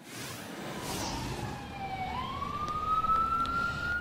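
An emergency-vehicle siren wailing, one slow tone that sinks in pitch and then climbs again over the second half, over a steady hiss of rain and road noise.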